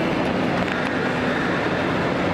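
Steady, dense background noise of a crowded public place: a continuous rumble and hubbub with a faint low hum, unchanged throughout.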